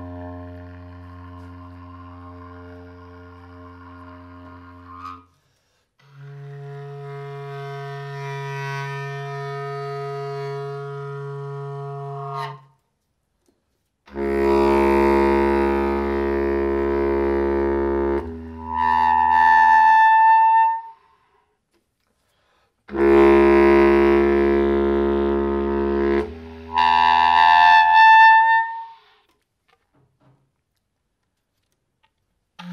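Solo bass clarinet playing long held notes with short silences between them: a low note, a slightly higher one, then twice a loud low note that leaps straight up to a high note.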